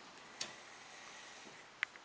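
Two short clicks about a second and a half apart, the second the louder: a sand monitor's claws slipping on the edge of its enclosure and regripping.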